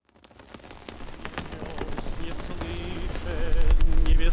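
Film soundtrack: a fire crackling, fading in from silence and growing steadily louder, joined in the second half by a low rumble and held, wavering sung notes as a musical score begins.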